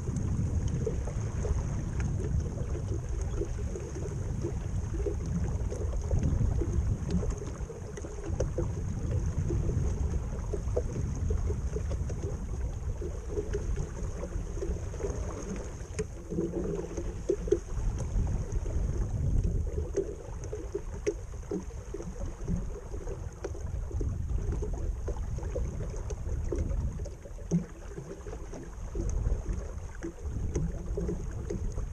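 Water rushing and slapping irregularly against the hull of a 12-foot flat iron skiff running downwind through small waves, with wind buffeting the microphone.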